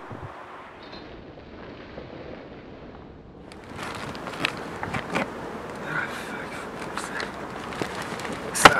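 A steady, muffled background noise. About three and a half seconds in it gives way to sharp knocks and clicks of bags and gear being handled, with faint voices.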